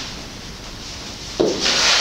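Whiteboard eraser wiping across the board: a lull, then one long rubbing stroke starting about one and a half seconds in.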